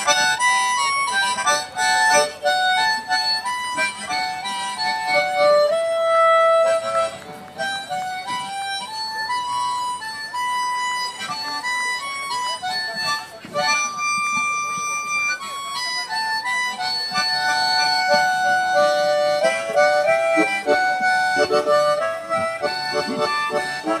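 Harmonica (mouth organ) playing a Hindi film-song melody, one note at a time, with notes held for up to a second or so and stepping up and down in pitch, and short breaths between phrases.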